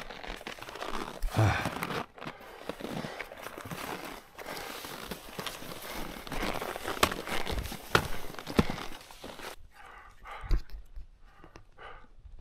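Touring skis sliding and crunching through snow on a skin track, stride after stride, with sharp clicks of pole plants. Near the end the gliding noise drops away and heavy breathing comes through.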